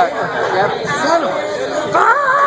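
People talking, their voices overlapping in conversation.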